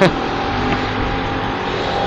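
Motorcycle engine running steadily while riding, with road noise picked up by a camera mounted on the bike.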